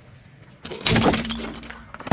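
Hard plastic action figure cracking and breaking as a car tyre rolls over it: a quick run of sharp cracks and snaps starting a little over half a second in and lasting about a second.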